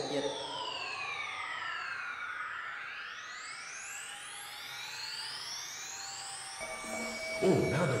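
Electronic synthesizer sweeps: several tones gliding up and down in pitch at once and crossing each other, like a science-fiction transmission effect. A steady tone joins about two-thirds of the way in.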